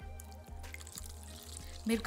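Water poured from a stainless steel tumbler into a bowl of ground mint and coriander paste.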